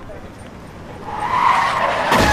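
Car tyres screeching in a skid, a loud squeal that builds from about a second in, as in the lead-up to a crash.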